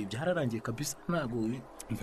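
Speech only: a voice talking in the drama's dialogue, with a short pause near the end.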